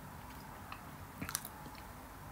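A few faint, short clicks over a steady low hum, the clearest small cluster a little past a second in.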